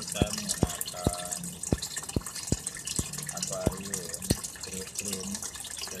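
Water from a small submersible pump's return hose splashing into a washing-machine-tub goldfish pond. It makes a steady hiss broken by many separate drip-like plops.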